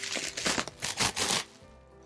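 Bubble wrap being pulled off a box, a run of crinkling and rustling that stops about a second and a half in, over soft background music.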